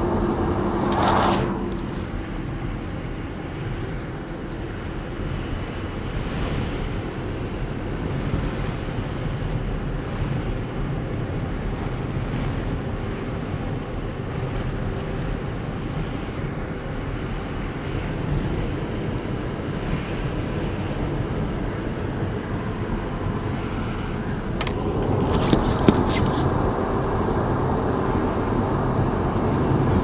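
Steady road and engine noise heard inside a moving car's cabin, with a brief louder burst about a second in and a louder stretch with a few sharp clicks near the end.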